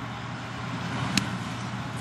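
A fastball popping into the catcher's mitt on a swinging strike: one sharp crack about a second in, over the steady background noise of the ballpark.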